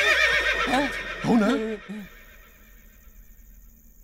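A loud, high, quavering whinny lasting about two seconds, like a horse neighing. It is followed by quiet with faint steady high-pitched tones.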